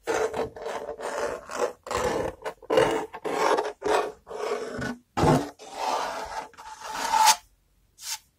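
Close-up scratching and rubbing on a hard object in quick rasping strokes, about two a second, stopping shortly before the end.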